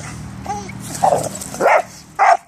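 A dog barking with two loud barks, about a second in and near the end, after a fainter short cry.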